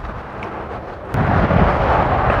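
Wind buffeting the camera microphone. It sets in suddenly about a second in as a loud, rough low rumble.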